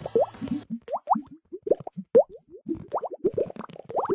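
Bubbly plop sound effects: a rapid, irregular string of short blips, each rising quickly in pitch, several a second.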